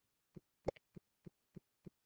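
Computer mouse scroll wheel clicking faintly and regularly, about three notches a second, as a web page is scrolled. One louder click comes about two-thirds of a second in.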